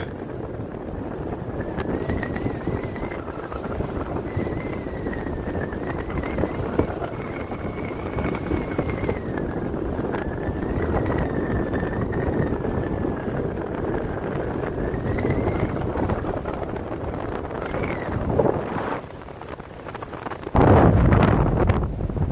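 Wind rushing over the microphone, with a faint wavering high tone running through most of it. The wind drops off briefly near the end, then comes back louder.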